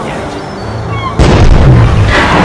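A cannon blast about a second in: a sudden loud boom that carries on as a heavy low rumble.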